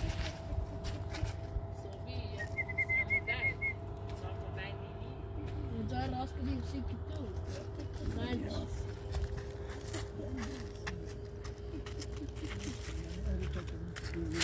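Indistinct voices over a steady low hum, with scattered clicks and scuffs of footsteps on stony ground and a brief high trill about three seconds in.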